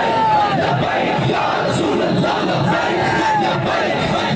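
A large protest crowd shouting: a loud, steady mass of many men's voices, with a couple of single drawn-out shouts standing out above it, one at the start and one about three seconds in.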